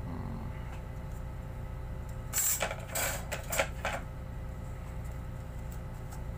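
Brass letter stencils being handled and swapped: a short run of clattering and scraping, about a second and a half long, starting about two and a half seconds in, over a low steady hum.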